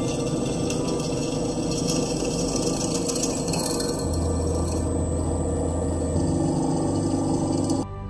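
A drill press twist bit cutting through a metal tube, a steady hissing, scraping grind that stops abruptly near the end. Soft ambient background music with sustained tones plays under it.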